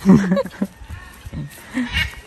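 A woman laughing, loudest in a burst at the start, then trailing off into short, quieter sounds.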